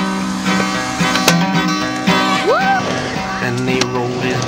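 Folk song music: acoustic guitar strumming between sung lines, with a single rising note about two and a half seconds in.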